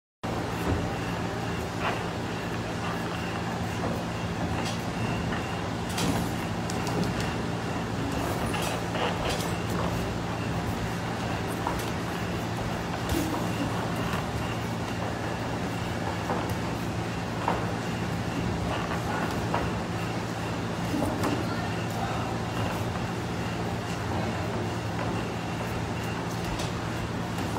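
Boxing gloves landing punches, with feet shuffling on the ring canvas, as scattered irregular smacks over a steady low hum.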